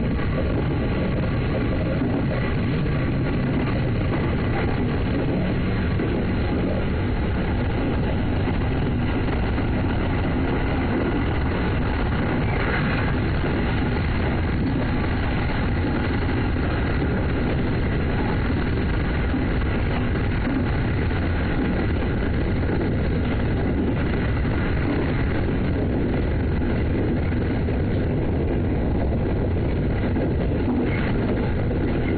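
A JR East 209-series electric train running at a steady pace, heard from just behind the cab: an even rumble of wheels on rail with a faint steady hum of tones over it.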